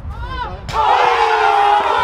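A group of footballers shouting and cheering together, breaking out suddenly about two-thirds of a second in and staying loud, in reaction to a shot at the crossbar.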